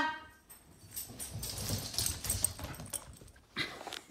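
A dog's claws ticking irregularly on a hardwood floor as it comes running when called, with a sharp click near the end.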